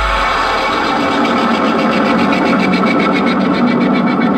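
Loud band music played through a large truck-mounted speaker rig. The heavy bass drops out right at the start, leaving a distorted, effects-laden melody over a fast, even pulse.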